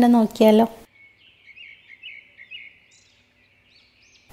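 A voice speaking for under a second, then faint high chirping over a low hiss for the rest.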